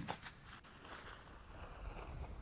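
The fading echo of a .45-70 Government rifle shot fired just before, dying away within about half a second, leaving only a faint low rumble.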